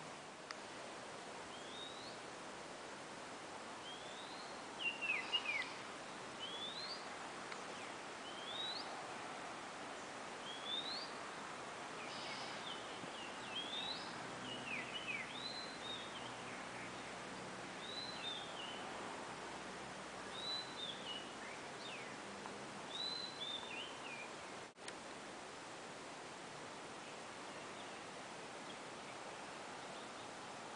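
A bird calling over and over, short rising whistled notes every second or two, some followed by a quick falling note, over a steady outdoor hiss. The calls stop about three-quarters of the way through.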